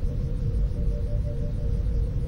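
Sustained low drone with a steady held tone, the eerie underscore of a sci-fi TV episode's soundtrack during a pause in the dialogue.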